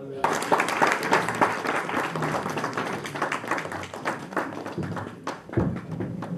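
Audience applauding for about five seconds, with voices mixed in, then fading; a low thump near the end.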